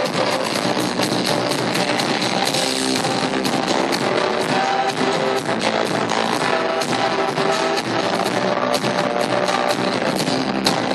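Live pop-rock band music with piano, played loud and steady throughout.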